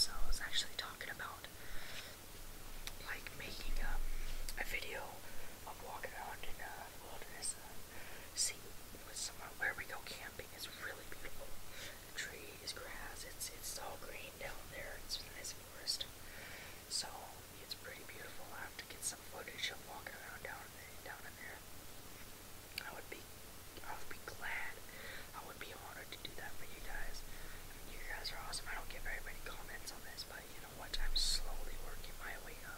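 Whispered speech, soft and breathy, with sharp hissing 's' sounds throughout.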